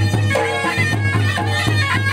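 Sambalpuri folk band music played live: a shrill reed pipe plays a wavering melody over a steady low drone, with drums beating throughout.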